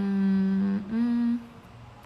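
A woman humming with closed lips: a longer steady 'mm' and then a short, slightly higher note, like an 'mm-hm'.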